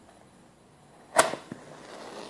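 A wooden match struck once about a second in: a single sharp scrape with a short trailing hiss as it catches.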